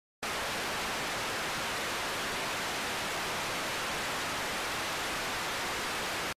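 Steady hiss of television-style static: an even noise with no tones in it, starting a moment after the beginning.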